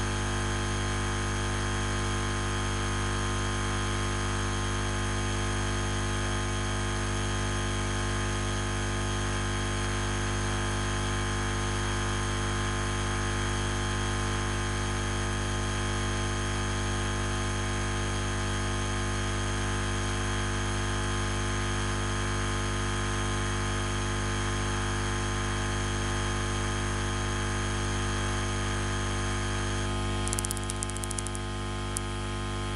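A loud, unchanging hum over a steady hiss, with several fixed pitches held throughout. It is a constant machine or electrical background noise.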